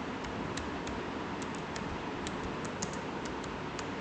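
Typing on a computer keyboard: a run of light, irregularly spaced key clicks over a steady background hiss.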